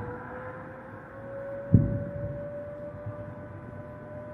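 Air-raid siren sounding one long tone that slowly rises in pitch, with a single sudden thump about two seconds in.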